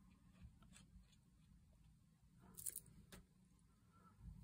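Near silence, with a few faint, soft clicks and a brief rustle, about two thirds of the way in, of hands handling a small card triangle and a plastic glue bottle.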